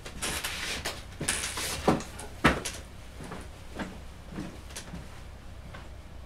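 Someone rummaging through storage to fetch a tool. Sliding and rustling come first, then a run of knocks, the sharpest about two and a half seconds in, growing fainter and sparser toward the end, over a steady low hum.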